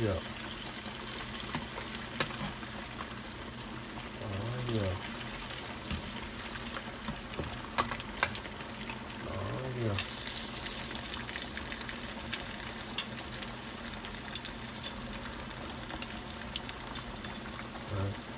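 Grated taro and cassava cakes deep-frying in a large pot of hot oil: a steady bubbling sizzle with scattered pops and crackles. This is the second frying, which crisps the cakes.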